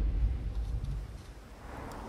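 Storm surf in strong wind: a low rumble of heavy waves breaking against a sea wall, mixed with wind noise, easing about a second in to a quieter wash.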